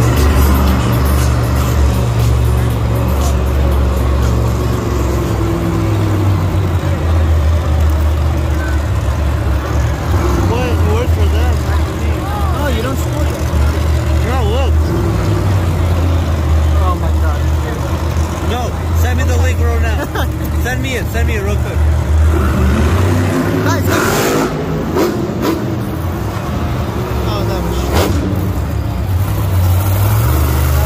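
Monster truck engines running, a loud, deep, steady rumble, with voices and arena PA sound over it.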